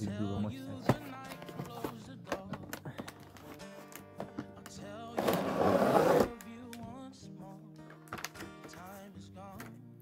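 Background music over the handling of a cardboard box and its clear plastic packaging, with scattered light clicks. About five seconds in there is a loud scraping rustle lasting about a second as the plastic tray is slid out of the box.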